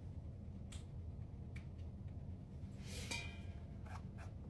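Steady low hum of room tone, with a few faint clicks and a brief rustle about three seconds in as things are handled.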